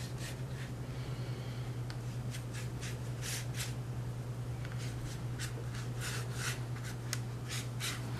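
Flat paintbrush laying water onto watercolour paper: a series of short brushing swishes in irregular bunches, over a steady low hum.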